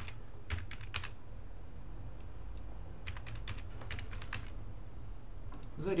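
Computer keyboard keys tapped in two short runs of clicks, about half a second in and again from about three seconds in, as a password is retyped.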